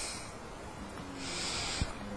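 Soft breathy exhales, like quiet laughter through the nose: one at the start and a longer one past the middle, with a small knock near the end.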